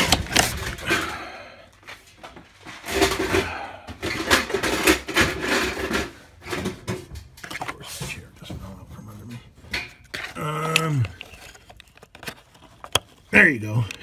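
Plastic ignition coil of an Audi Q7 3.6L being worked down into its spark plug well, with scraping and knocking of plastic parts. Near the end the coil snaps into place with a single sharp click, a kind of pop noise, which shows it has seated on the plug.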